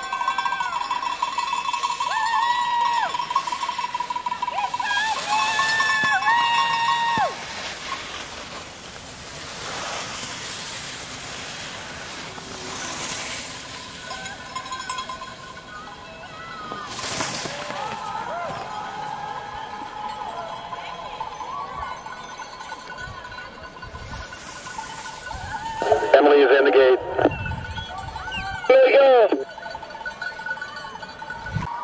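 Spectator cowbell shaken rapidly alongside long drawn-out cheering calls for the first seven seconds or so, then quieter crowd sound, then two loud shouts of encouragement from spectators near the end.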